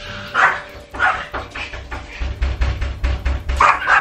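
Pet dog barking in several short, separate barks.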